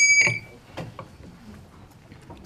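Small brass hand bell ringing loudly with a clear high tone, stopped short about a third of a second in, as if damped, then low room noise with a few light knocks. The ring calls the room to attention before a speech.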